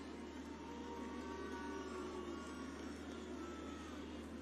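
Faint steady background noise with a constant low hum, and faint murmur that sounds like distant voices.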